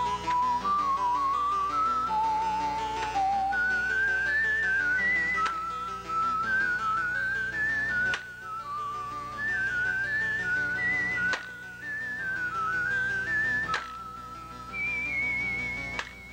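A whistled tune with a wavering vibrato, stepping up and down through a lively melody over soft background music. Three sharp knocks cut in a few seconds apart in the second half.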